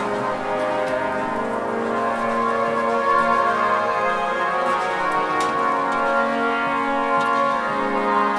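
Slow music of long, sustained chords from a Renaissance vocal and wind ensemble, with a few sharp clicks.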